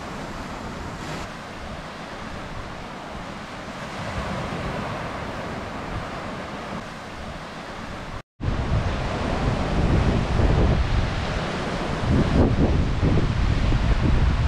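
Ocean surf breaking and washing over rocks at the foot of sea cliffs, a steady rushing noise. About eight seconds in the sound cuts out for a moment, then comes back louder, with wind buffeting the microphone.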